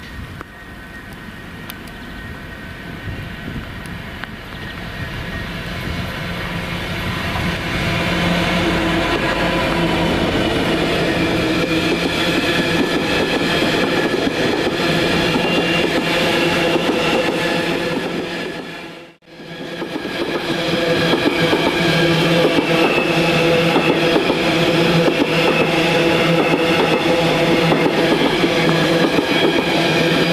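Class 66 diesel freight train passing close by: the locomotive's engine running and a long rake of box wagons rolling over the rails, with rhythmic wheel clatter and steady tones. The sound builds over the first several seconds, then breaks off sharply for a moment about two-thirds through and comes back just as loud.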